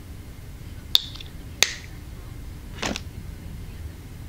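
Two sharp small clicks about half a second apart, then a short, softer sound near three seconds in, over quiet room noise.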